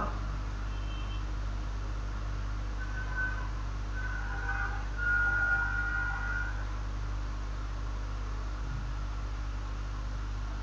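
Steady low electrical hum with an even hiss of microphone and room noise, and a few faint, brief higher tones near the middle.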